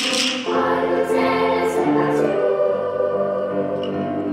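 Large children's choir singing long held notes, moving to new notes a couple of times.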